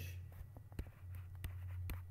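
Stylus writing by hand on a pen tablet: a string of light, irregular taps and short scratches as letters are drawn, over a steady low electrical hum.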